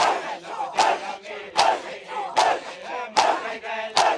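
Matam: a crowd of men striking their bare chests in unison, a sharp slap about every 0.8 seconds, with the crowd's voices chanting between the strikes.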